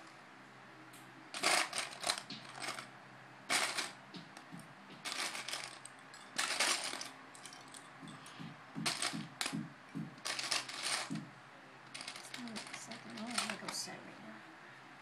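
Loose plastic Lego bricks clattering and clicking in short bursts every second or two, as pieces are rummaged through by hand.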